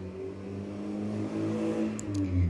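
A car passing by, its engine a steady low hum that grows louder toward the end of the pass.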